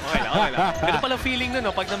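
Commentators' voices talking over the live game sound, with a basketball being dribbled on the court underneath.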